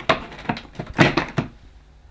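A few short plastic knocks and clicks from the cream plastic bag door and casing of a Hoover Turbopower Boost upright vacuum as it is pressed shut and handled. The loudest comes about a second in.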